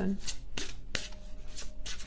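Tarot cards being shuffled by hand: irregular flicks and rubs of card on card.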